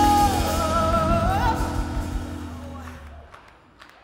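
The end of a song: a high held sung note that dips in pitch and rises again about a second in, over a band's sustained final chord, all fading out by about three seconds.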